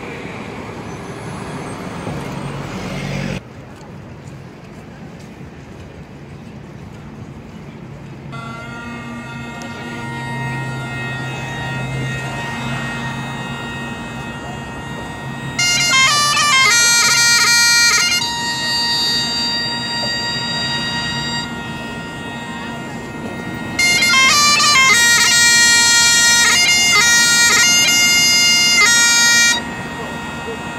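Road traffic and a double-decker bus passing for the first three seconds or so. Then Great Highland bagpipes: the steady drones sound on their own for a while, and the chanter melody comes in loud a little past halfway, drops back, and returns loud for most of the last quarter.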